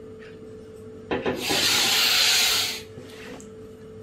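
A man's long, forceful exhalation, a breathy rush lasting under two seconds and starting about a second in, as a held breath is let out during a yoga breathing exercise.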